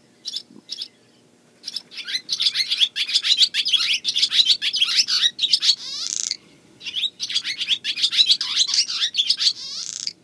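Barn swallow singing: a few chips, then a long run of bubbly chips and warbles in two phrases, broken by a short pause about six seconds in.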